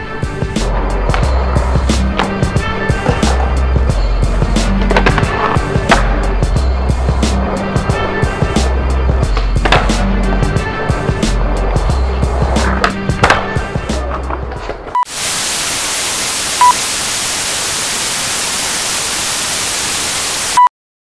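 Background music with a repeating bass line, over the sharp clacks of a skateboard being popped and landed on concrete and its wheels rolling. About fifteen seconds in it cuts abruptly to a loud, steady static hiss with a few short beeps.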